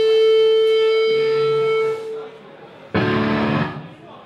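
Amplified electric guitar holding a single note that rings for about two seconds and fades out, followed about three seconds in by a short, loud chord.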